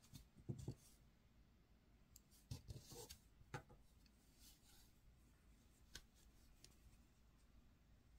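Near silence with a few faint, short clicks and rubs from hands handling a crochet hook, a plastic locking stitch marker and yarn.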